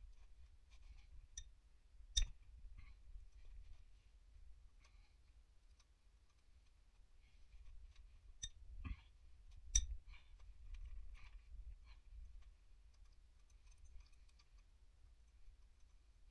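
Sparse, sharp metallic clicks and clinks of a breaker bar and socket being worked on the diesel cylinder-head bolts, two loudest about two seconds in and about ten seconds in, with faint scattered ticks of tool handling between them.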